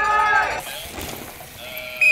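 People at the start gate shouting a drawn-out cheer as a downhill mountain-bike rider leaves the start, breaking off about half a second in.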